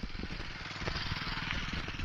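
A vehicle's engine running steadily at road speed, with a motorcycle passing close by: a rush of engine and tyre noise swells about a second in and eases near the end.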